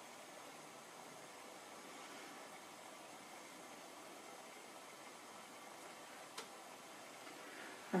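Quiet room tone: a steady, faint hiss with one short faint click about six seconds in.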